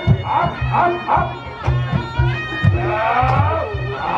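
Reog Ponorogo accompaniment music: a reedy slompret shawm plays a wavering, sliding melody over a regular beat of low drum strokes.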